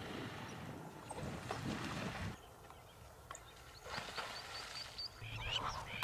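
Faint outdoor ambience with a low noisy rustle, then a short run of high chirps about four seconds in, and a low steady hum starting near the end.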